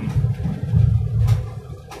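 Car cabin rumble while driving: the engine and tyres on the road make a loud, uneven low rumble, with two brief clicks in the second half.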